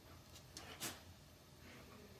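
Near silence: room tone, broken by two faint, brief puffs of noise, the clearer one just under a second in.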